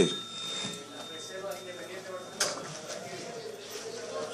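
Meeting-hall room tone with a faint murmur of voices; a faint high ringing tone dies away over the first couple of seconds, and a single sharp click or knock sounds about two and a half seconds in.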